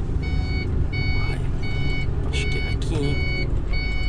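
Short electronic beeps repeating at a steady pace, a little over one a second, over the low running of an Iveco truck's diesel engine in the cab while the truck turns.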